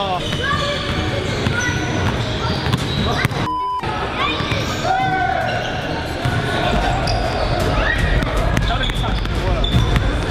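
Basketballs bouncing on a hardwood gym floor in a large, echoing hall, amid voices.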